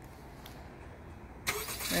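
2020 Honda CR-V's engine started by the key fob's remote start, coming on suddenly about one and a half seconds in and settling into a steady run.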